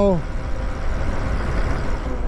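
Steady wind rush and low rumble on the camera microphone, with tyre noise, from riding a Lyric Graffiti e-bike along the road. The tail of a spoken word is heard at the very start.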